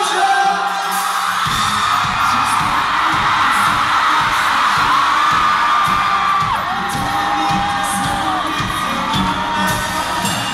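Live pop-rock band played through a concert PA, heard from within the crowd: long sung notes over a steady kick-drum beat that comes in about a second and a half in, with the audience screaming and singing along.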